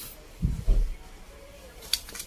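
Handling noise from a disassembled spinning reel being set down on a cardboard-covered bench: two dull low thumps about half a second in, then a short sharp click near the end.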